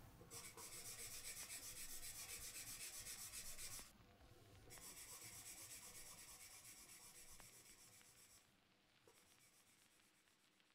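Faint, rhythmic scratching at several strokes a second, in two stretches with a short break about four seconds in, fading out by about eight seconds.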